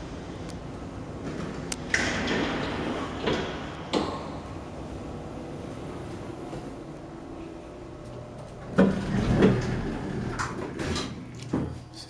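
1970s Armor traction elevator doors sliding open about two seconds in, with a knock a couple of seconds later. A louder stretch of door and car movement comes near nine seconds in, over a low steady hum as the elevator runs.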